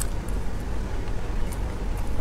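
Soft cake being chewed close to the microphone, with a few faint mouth clicks over a steady low rumble.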